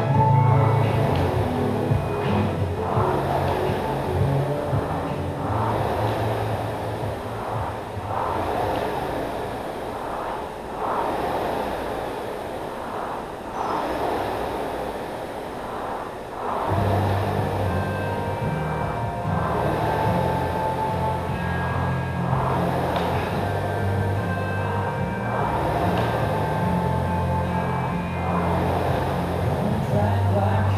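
Concept2 air rowing machine worked at a hard pace: the flywheel fan whooshes up with each drive stroke and fades on the recovery, a surge about every one and a half seconds. Background music with a steady bass line plays over it.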